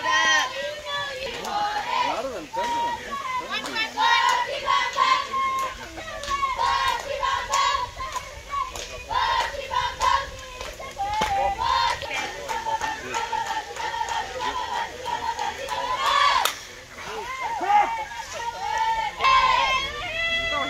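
Many girls' high-pitched voices shouting and chanting cheers, keeping up almost without a break, with one sharp knock about sixteen seconds in.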